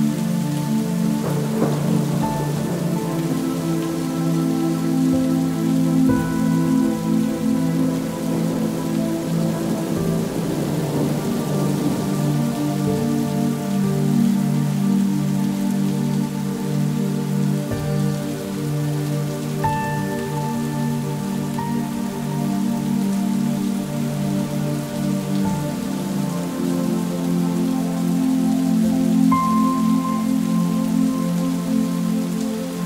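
Recorded rain falling, layered with slow sustained music chords that change every few seconds: an ambient rain track.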